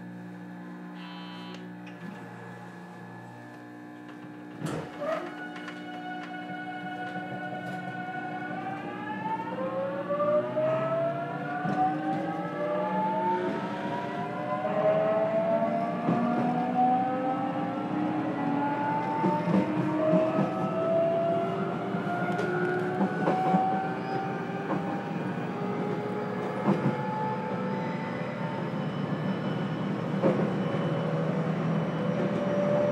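Traction motors and inverter of a JR Kyushu 813 series electric train, heard in the motor car, pulling away from a stop. A steady hum and a click about five seconds in give way to a set of whining tones that start about eight seconds in and climb steadily in pitch as the train picks up speed, with wheel knocks over the rails growing underneath.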